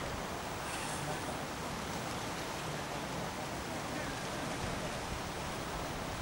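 Steady outdoor hiss with wind rumbling on the microphone.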